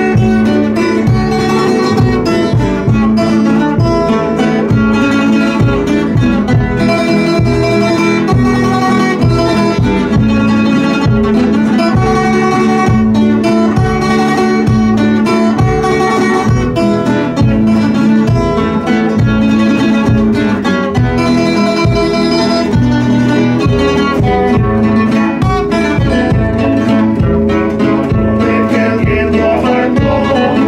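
Instrumental music from nylon-string Spanish guitars strummed and plucked together, with a rope-tensioned bass drum beaten with a mallet keeping a steady beat.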